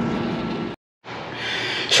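A steady mechanical hum at an air conditioner's outdoor condensing unit, cut off abruptly under a second in. After a short gap, faint room noise follows.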